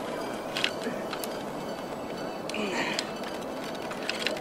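A few sharp clicks from a lineman's hand-operated lever hoist as its handle is worked, over a steady background hiss.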